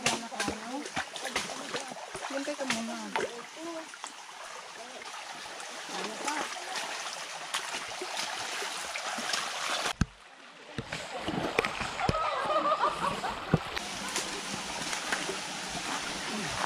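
Feet splashing and crunching through a shallow, rocky stream over running water, with faint voices; the sound drops out briefly about ten seconds in.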